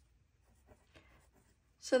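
Faint scratching of a pen writing the number 33 on a paper workbook page, a few short strokes.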